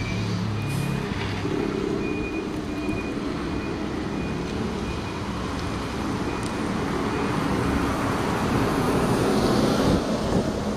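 Battery-electric Optare Solo EV midibus driving past at low speed, mostly tyre and road noise over steady traffic, with a faint high whine that comes and goes. A low rumble is heard in the first second, and the noise grows louder toward the end.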